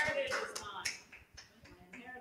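Light hand clapping: a few faint, sharp claps that die away about a second in.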